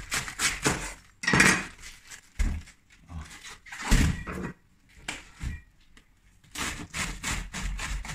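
A large kitchen knife cutting through a head of white cabbage on a wooden cutting board. The leaves crunch as the blade goes through, and there are knocks as it reaches the board and the cut pieces are set down. The cuts come in separate strokes, loudest about a second and a half in and again at four seconds.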